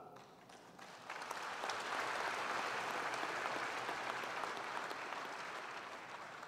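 An audience applauding, starting about a second in and slowly tapering off.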